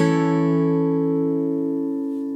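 Acoustic guitar's final strummed chord ringing out and slowly fading at the end of a song.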